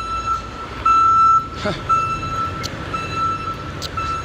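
Vehicle reversing alarm beeping, one steady high-pitched beep repeated in regular pulses, over a low rumble of traffic.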